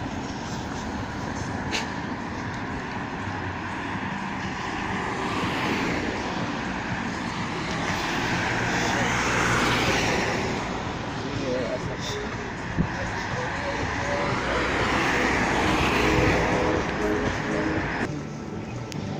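Road traffic passing close by: steady traffic noise with two cars going by, each swelling up and fading away, the first about halfway through and the second near the end. A single sharp click about two-thirds of the way through.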